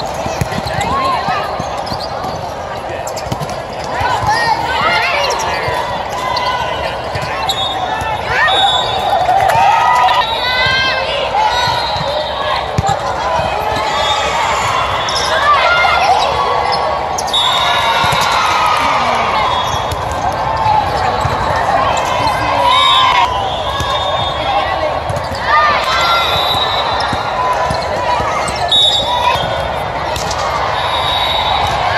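Indoor volleyball being played: the ball being struck and bouncing at intervals, under steady indistinct calling and chatter from players and spectators in a large echoing hall.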